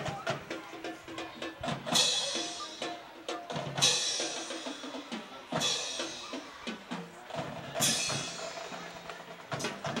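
Band percussion playing a cadence: quick drum beats with four cymbal crashes, each ringing out, about two seconds apart.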